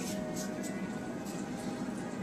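Faint background music with a few held tones, at a steady low level.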